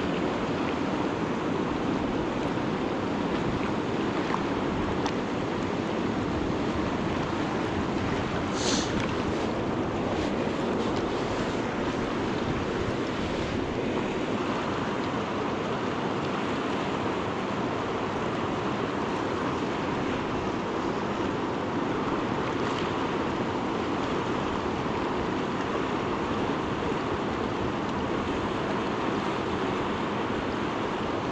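Steady rush of a fast-flowing river current over rocks, with a brief higher hiss about nine seconds in.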